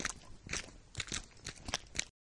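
A quiet series of short crunching clicks, about three a second and unevenly spaced.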